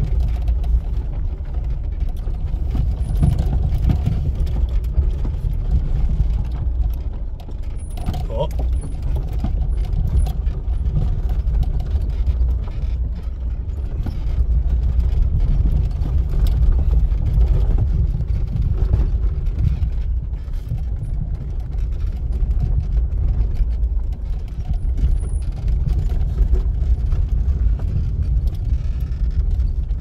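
Inside a Lada Samara rolling slowly down a rough, broken gravel track: a steady low rumble from the car and its tyres, with scattered knocks and rattles from the body and suspension on the uneven surface.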